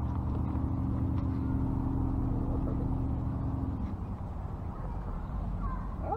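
An engine running steadily nearby, a low hum with an even pitch, which fades away about four seconds in.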